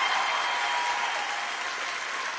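Studio audience applauding, the applause slowly dying away.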